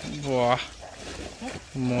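A man's voice calling out twice in long, drawn-out shouts, one shortly after the start and one near the end.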